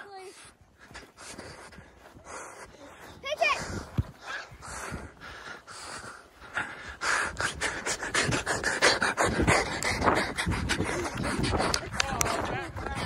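A person panting hard while running on grass, with footfalls that come quicker and louder in the second half. A short vocal cry about three seconds in.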